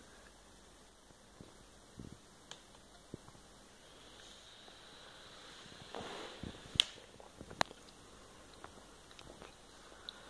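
Quiet room tone with scattered faint clicks and bumps of handling. A brief rustle comes about six seconds in, followed by two sharp clicks, the loudest sounds.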